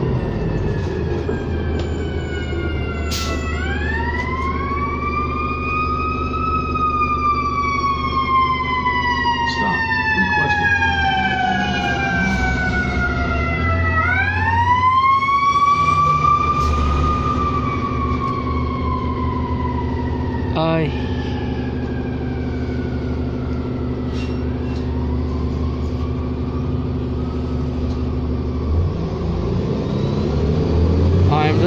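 An emergency vehicle's siren wailing, rising and falling slowly twice and fading out about two-thirds of the way through. It is heard from inside a 2007 New Flyer D40LFR city bus, over the steady hum of the bus's diesel engine.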